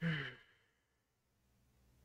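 A man's short voiced sigh right at the start, a breathy exhale falling in pitch and lasting under half a second.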